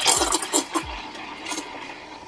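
Espresso machine steam wand with a single-hole tip steaming milk in a pitcher. A loud, crackling hiss in the first second settles into a quieter, steady hiss with a faint tone.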